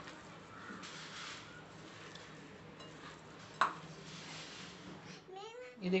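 Faint, soft sounds of minced chicken being mixed by hand with spices and breadcrumbs in a bowl, with one sharp click about three and a half seconds in.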